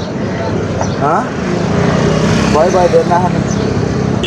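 Street traffic: a motor vehicle passing close by, its engine hum and road noise swelling about halfway through, under short bits of talk.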